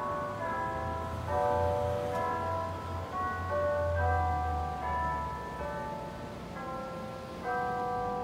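A slow melody of bell-like chimes, several notes sounding together and changing every half second or so, over a low hum.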